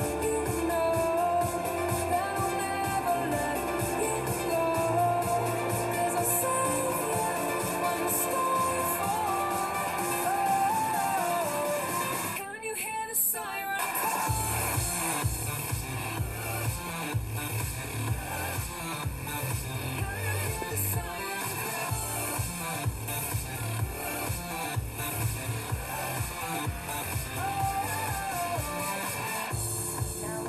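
Background pop song with a sung melody. About twelve seconds in the song briefly drops out, then carries on with a steady beat.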